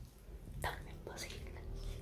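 Soft kisses and breathy whispers close to the microphone as a woman kisses her small dog: a few short smacks, about half a second and a second in, over a faint low room hum.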